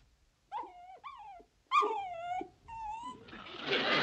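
A dog giving four short, high calls, each falling in pitch, then audience laughter rising near the end.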